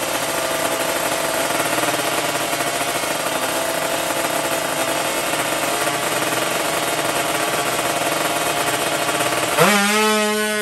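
Drag-racing motorcycle engine held at steady high revs on the start line. About half a second before the end it gets louder and rises sharply in pitch as the bike launches off the line.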